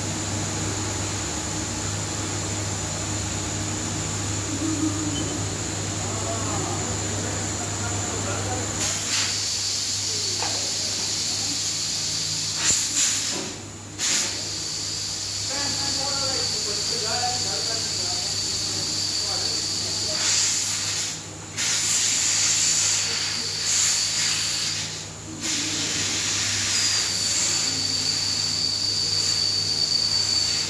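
A steady hum, then from about nine seconds in a loud hiss of escaping air, like compressed air in a tyre workshop. The hiss cuts out briefly three times.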